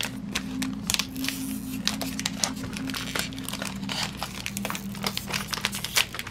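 Foil Pokémon TCG booster pack wrapper crinkling in the hands with dense, irregular crackles, over a steady low tone.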